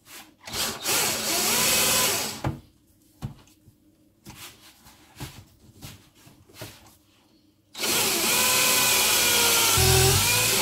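Cordless drill working into a wooden block: a couple of short runs in the first two seconds, a few light knocks, then a long steady run from about eight seconds in, its motor pitch dipping and rising under load.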